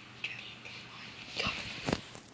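Handling noise from a phone camera being picked up and moved: rustling and a few knocks about a second and a half in, after some faint high-pitched sounds.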